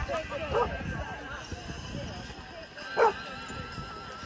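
Golden retrievers barking and yipping amid background crowd chatter, with one louder bark about three seconds in.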